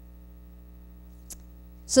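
Steady low electrical hum, mains hum in the microphone and recording chain, with one short click about a second and a half in.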